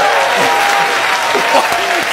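Studio audience applauding and laughing, with a long drawn-out voice held over the noise.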